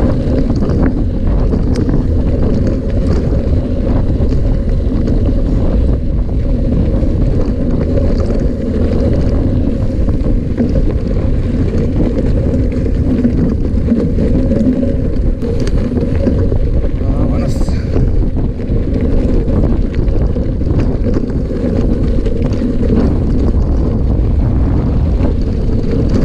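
Steady wind buffeting on a handlebar-mounted camera microphone, mixed with the rumble and rattle of mountain bike tyres rolling downhill over a loose gravel dirt track.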